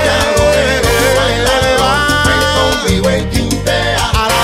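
Cuban timba (salsa) band recording: a steady rhythm of percussion strokes over a strong bass line, with held, slightly wavering melody notes on top.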